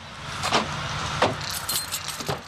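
Car keys jangling in a hand at a car door, with two sharp clicks less than a second apart.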